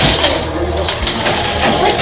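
Small wire toy shopping cart rattling steadily as it is pushed across the floor, its metal basket and wheels jingling.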